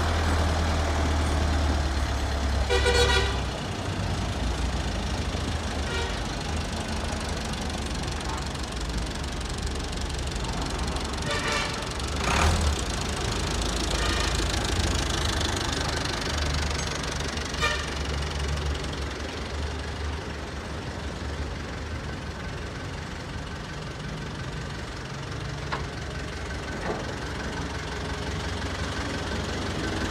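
Kubota M7000DT tractor's diesel engine running, a steady low rumble as the tractor is driven slowly, with a few short higher sounds over it, the first about three seconds in.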